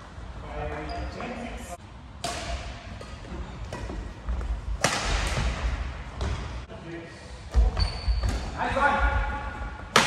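Badminton rally in a large hall: sharp racket-on-shuttlecock hits a few seconds apart that ring in the room, heavy thuds of players' feet on the wooden court and brief high shoe squeaks.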